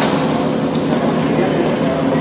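Badminton being played in a large, echoing hall: a sharp racket hit on the shuttlecock about three-quarters of a second in, then thin high shoe squeaks on the court, over a steady background of players' voices.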